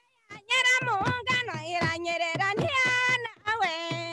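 A high voice singing in long notes that slide up and down between breaths, with short low notes sounding beneath it.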